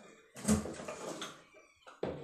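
A short grunt of effort from a man straining against the load of a cable arm-wrestling machine, starting about half a second in and trailing off over about a second.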